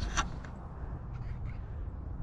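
Wind rumbling on the microphone, with a short harsh sound, possibly a bird call, about a quarter second in.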